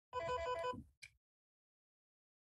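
A short electronic ringing tone, like a telephone ring, with a rapid trill. It stops within the first second.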